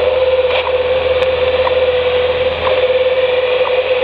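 Shortwave standard time and frequency signal received in AM on 15 MHz through a Yaesu portable transceiver's speaker: a steady tone with faint ticks about once a second over receiver hiss. The tone cuts off sharply at the end.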